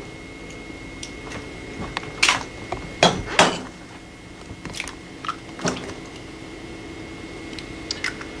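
Two eggs being cracked into a stainless steel mixing bowl: a handful of sharp taps and shell cracks spread over the seconds, the loudest a pair about three seconds in, over a steady background hum.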